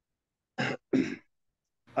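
A person clearing their throat twice in quick succession over a video-call line.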